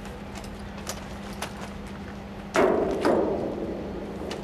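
Two sudden loud thumps about half a second apart, a little past halfway, each trailing off over about a second. A steady low hum and scattered light clicks run underneath.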